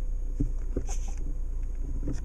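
2006 Volkswagen Jetta 2.5's engine idling steadily, heard from inside the cabin as a low hum. It comes with a few light clicks from the manual gear lever being moved through the gate.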